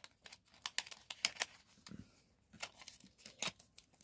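Irregular light clicks and scrapes of a deck of playing cards being handled and slid into a thin cardboard box.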